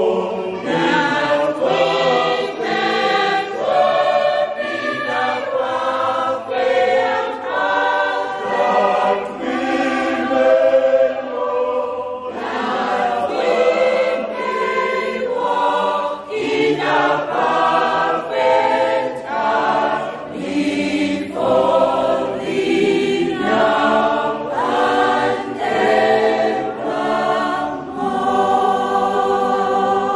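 A mixed choir of men and women singing together in full voice, one continuous song.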